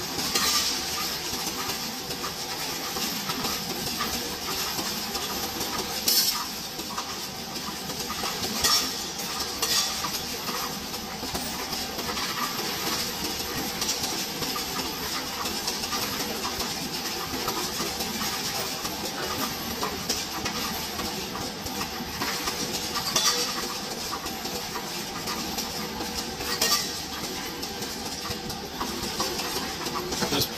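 Coinstar coin-counting machine running with a steady rattle as coins clink and jingle through its sorter, with a few louder sharp clinks now and then as coins are pushed into the tray.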